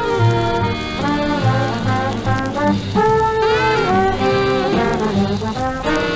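A 1940s swing big band playing, with brass and saxophones holding chords and phrases over a bass line, heard through the narrow, dull sound of an old radio broadcast recording.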